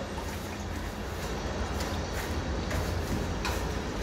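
Steady scrubbing noise of a liquid wall primer being spread over rough plaster, with a few faint strokes over a constant low hum.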